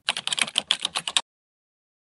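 Keyboard-typing sound effect: a quick run of about a dozen key clicks lasting just over a second, cutting off suddenly.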